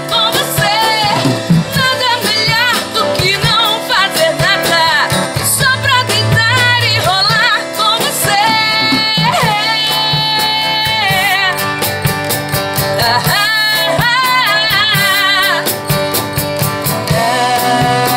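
A woman sings live into a handheld microphone over instrumental backing. She holds long notes that waver in pitch.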